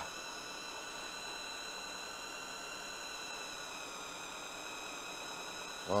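Steady faint hiss with several constant high-pitched whining tones: background noise of the studio sound, with no other event in it.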